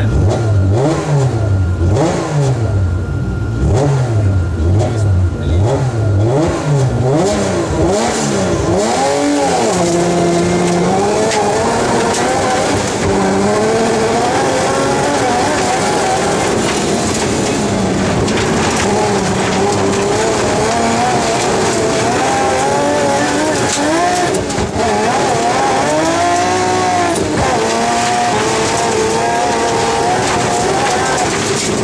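A BMW M3 rally car's engine heard from inside the cabin. For the first nine seconds or so it is revved up and down about once a second. After that it pulls through the gears in longer climbs in pitch, each cut short by a drop at the shift, over steady tyre and road noise.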